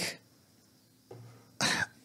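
A man clears his throat in a pause between words: a low voiced hum a little past halfway, then one short, sharp cough near the end.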